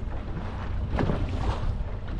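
Wind buffeting the microphone over the steady low hum of a fishing boat's engine running at trolling speed, with one short knock or gust about a second in.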